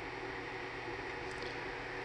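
Pride Jazzy power wheelchair gearmotor running steadily at low speed on a PWM speed controller, an even electric hum.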